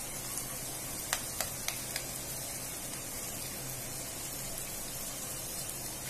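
Onions, peas and other vegetables with freshly cracked eggs frying in oil in a non-stick pan: a steady, even sizzle. A few light ticks come between one and two seconds in.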